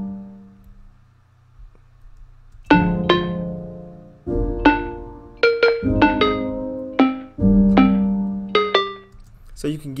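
Software felt piano (Scaler 2's Felt Piano sound) playing in C minor. A chord dies away in the first second, then after a short pause chords with quick melody notes over them strike and decay one after another until near the end.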